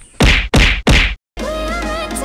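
Three loud whack sound effects about a third of a second apart, then a moment of dead silence and music with a steady beat starting just past halfway.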